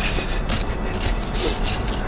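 Gloved hands working a small hand tool through loose soil around a buried stoneware flagon, giving a few short scrapes over a low rumble.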